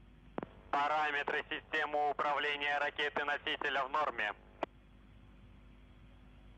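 A voice speaking for about three and a half seconds over a launch broadcast feed, then a single click and a faint steady hiss.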